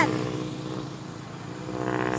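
Engine of a motor vehicle passing on the road, a steady hum that grows louder toward the end.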